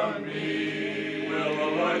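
Men's chorus singing a cappella in close harmony, holding long chords that shift about a second in and again near the end.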